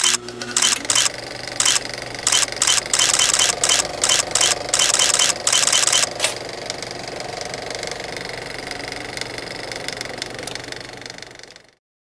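Drone motors and propellers humming steadily, with loud bursts of hiss in the first six seconds. The sound cuts off suddenly near the end.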